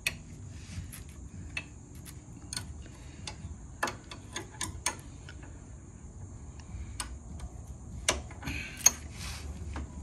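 Hand tools clicking and tapping against the metal rear wheel hub of an ATV: irregular sharp metallic clicks, the loudest near the end.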